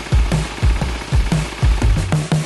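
Background music: an electronic track with a steady, driving kick-drum beat and deep bass.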